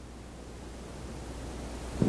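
Room tone in a small room: a steady hiss with a low hum underneath, rising slightly towards the end.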